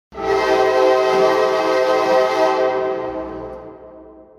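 A loud sustained chord of several steady tones, horn-like, that starts suddenly, holds for about two and a half seconds and then fades away.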